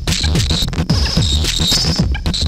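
Modular synthesizer noise music: a pulsing low bass with repeated falling pitch sweeps several times a second, under gritty noise and a high band of tones that switches on and off.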